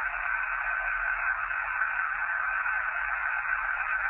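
Steady tinny hiss from a handheld digital voice recorder playing back through its small speaker, with a faint steady whine in it. This is the silent gap after a question in an EVP recording, and no voice is heard in it.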